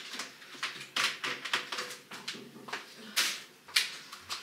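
Irregular knocks, clicks and rustles from shoes and a small shoe rack being handled and shifted about, with a louder scraping rush about three seconds in and a sharp click near the end.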